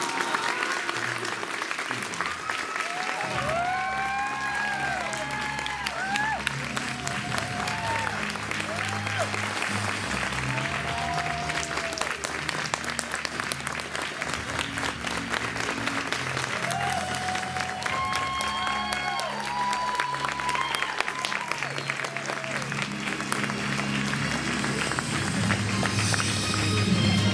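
Audience applauding steadily, with music playing underneath.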